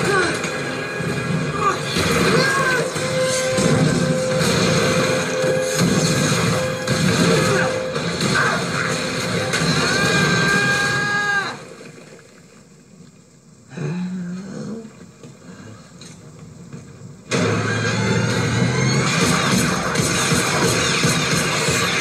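Battle-scene film soundtrack played on a television: orchestral music mixed with crashes and impact effects. About halfway through it drops to quiet for roughly six seconds, then comes back loudly.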